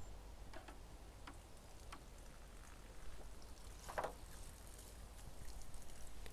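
Faint water sounds from a photographic test strip being moved through a shallow plastic tray of wash water with plastic print tongs: small drips and light ticks, one a little louder about four seconds in, and dripping as the strip is lifted out near the end.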